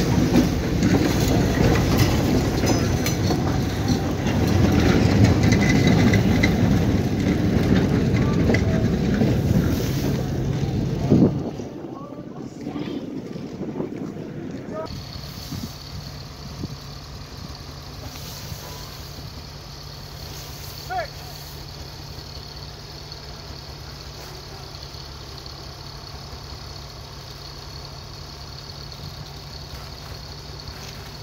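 1927 gas-electric motor car and caboose rolling past at close range: a loud rumble of wheels and engine that cuts off about eleven seconds in. After that comes a much quieter steady low hum from the motor car standing by the station, with one short chirp about two-thirds of the way through.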